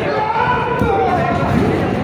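Wrestlers' feet and bodies thudding on the canvas of a wrestling ring, with voices shouting over them.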